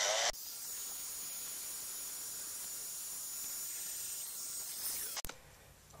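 Hot air gun blowing to shrink heat-shrink tubing over soldered wire splices: a steady hiss with a faint high whine. It stops near the end with a sharp click.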